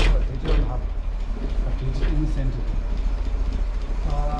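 1955 Land Rover Series 1 engine idling steadily with a low, even rumble.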